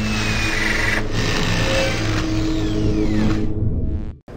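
Intro sting music with a dense, grinding industrial texture and falling sweeps, stopping abruptly at the end.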